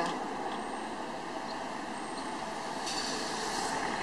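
Steady outdoor background noise with no single clear source, an even hiss that grows a little brighter about three seconds in.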